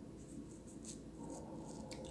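Quiet room tone with a few faint, short clicks about midway and one near the end; no speech.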